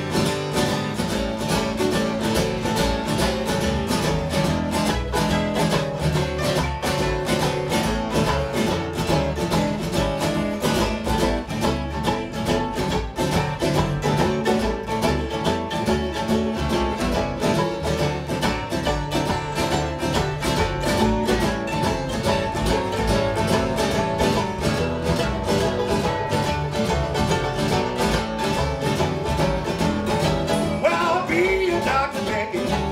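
Live acoustic instrumental: acoustic guitars strummed and picked in a fast, steady rhythm, with the low notes of a washtub bass underneath.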